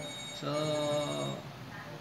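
A steady high electronic tone, like a phone's ring, sounding for about a second and a quarter and then cutting off, under a man saying a word.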